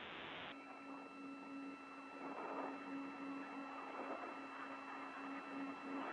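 Steady radio static on an open communications channel between transmissions: hiss with a low hum and faint steady whistle tones, the hiss brightening slightly about half a second in.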